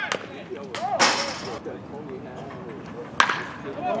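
One sharp crack about three seconds in as a pitched baseball is stopped at home plate, with a short rushing noise about a second in and men's voices chatting throughout.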